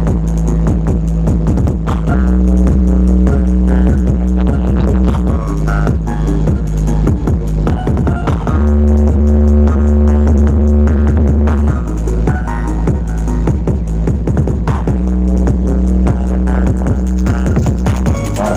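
Electronic dance music played loud through a large hajatan-style sound system of stacked 18-inch subwoofer cabinets and a hanging line array. Deep sustained bass notes change about every three seconds under a steady beat.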